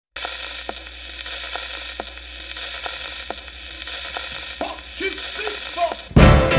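Steady hiss and static over a low hum, with faint ticks about twice a second, like the crackle of an old radio or record. A few short wavering tones come near the end.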